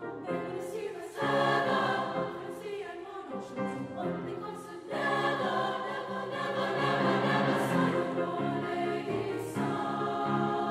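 High-school treble choir singing in several parts, with the sound growing louder about a second in and again about five seconds in.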